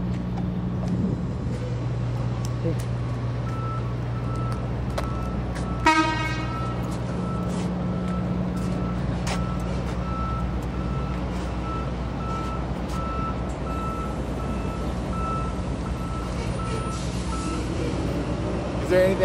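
A truck's backup alarm beeps steadily, about three beeps every two seconds, from a few seconds in until near the end, over the steady hum of an engine running. About six seconds in comes a short, loud horn toot.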